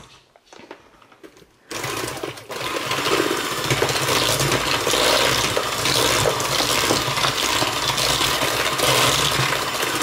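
KitchenAid electric hand mixer switched on about two seconds in, its motor and beaters then running steadily as they beat an egg into creamed shortening and sugar in a stainless steel bowl.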